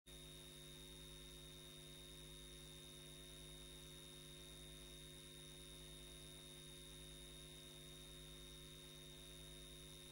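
Near silence: a faint, steady electrical hum with a thin high tone above it, unchanging throughout.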